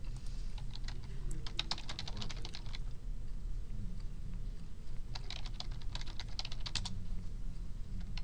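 Typing on a computer keyboard: two quick runs of keystrokes, each about a second and a half long, with a pause between them, over a steady low hum.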